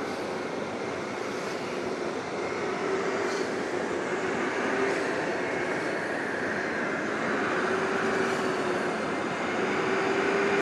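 Commercial carpet-cleaning vacuum machine running steadily, its motor a loud hiss with a whine that wavers slightly in pitch as the wand is worked over the carpet.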